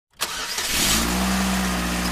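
Car engine sound on the logo intro: a rush of noise as it starts, then from about a second in a steady running hum.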